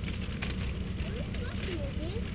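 Steady low rumble of a bus engine heard inside the passenger cabin, with scattered light clicks and faint children's voices.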